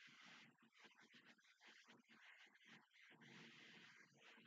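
Near silence: faint room tone with a low, uneven background hiss.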